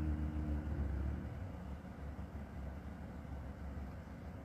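A low hummed note from a man's voice fades out about a second in, leaving a steady low rumble of background noise.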